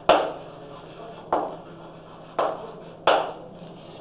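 Chalk striking a blackboard while writing: four sharp taps, roughly a second apart, each dying away quickly.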